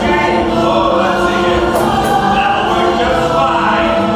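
Choral music: a choir singing sustained, held chords at a steady loud level.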